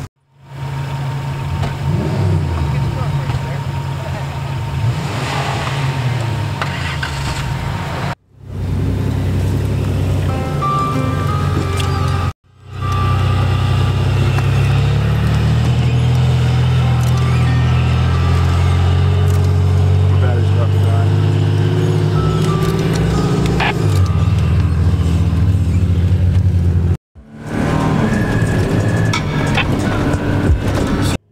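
Toyota 4x4 off-road engines running at low speed on sand, in several short clips joined by abrupt cuts, with music and indistinct voices underneath.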